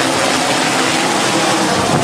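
Helicopter flying low overhead and moving off, a loud steady rush of rotor and engine noise.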